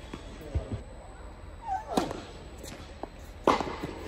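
Tennis ball impacts echoing in an indoor tennis hall: a few light bounces, a sharp hit at about two seconds with a short squeak just before it, and the loudest crack of racket on ball shortly before the end.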